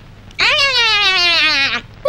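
A cartoon character's voice giving one long, bleat-like whine whose pitch falls slowly, lasting about a second and a half.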